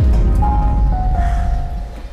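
Dramatic background-score sting: a deep low boom hits suddenly and swells, with a thin held note above it that steps down in pitch twice, fading near the end.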